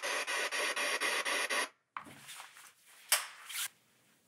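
Radio static chopped in an even rhythm of about six pulses a second, the sound of a ghost-hunting spirit box sweeping through stations, cutting off suddenly a little under two seconds in. After it come faint rustling and one sharp click near the end.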